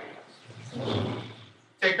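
A man's low, rough vocal sound lasting about a second, like a hum or throat-clearing between phrases of speech.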